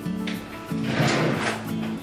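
Background music with a steady tune, and about a second in a kitchen drawer sliding as a spoon is fetched from it.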